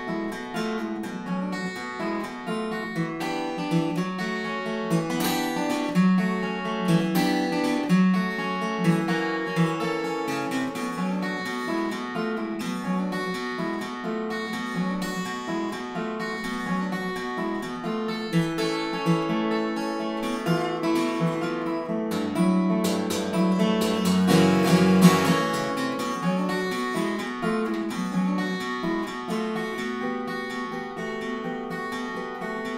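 Solo Yamaha LL-TA TransAcoustic steel-string acoustic guitar, capoed and played fingerstyle: an instrumental built on a repeating riff with variations. About three quarters of the way through it swells into a louder, fuller passage with added deep bass notes before settling back.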